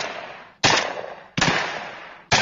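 Two shots from a semi-automatic 12-gauge combat shotgun (Benelli M4, L128A1), fired about three-quarters of a second apart. Each is a sharp crack that dies away in a short tail of echo.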